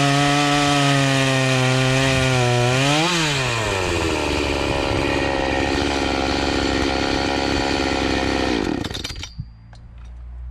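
Oleo-Mac GS 651 two-stroke chainsaw running under load in a cut. About three seconds in, its pitch jumps up briefly as the chain breaks through the log, then it settles to a lower steady note. The engine cuts off about nine seconds in.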